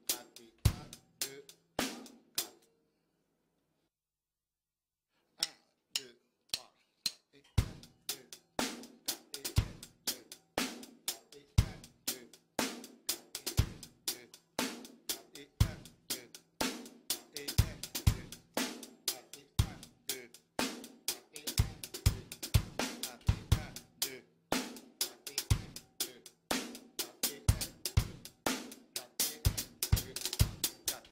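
Solo drum kit playing a reggae 'one-two' groove, with hi-hat, snare and bass drum. It stops about two and a half seconds in and goes silent for nearly three seconds. It comes back with a few soft strokes and settles into a steady beat with a heavy hit about once a second.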